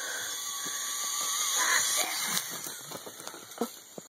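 Zip-line trolley running along its cable: a high hiss with a faint steady whine that grows louder over the first two seconds and then fades as it moves away. Several short knocks near the end.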